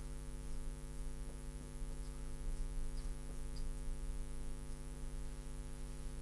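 Steady electrical mains hum, a low buzz with many evenly spaced overtones, with a few faint ticks from a marker drawing on a glass lightboard.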